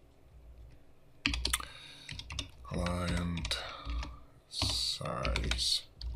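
Typing on a computer keyboard: keys clicking in short bursts with pauses between them.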